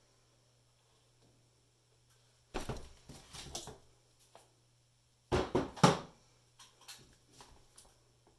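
Knocks and clatter of plastic paint cups being handled and set down on the work table, in two bursts a few seconds apart, with a few lighter clicks after.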